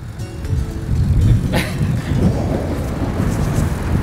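Wind rumbling on the microphone, with tyre and road noise from a road bike being ridden. There is a single sharp click about a second and a half in.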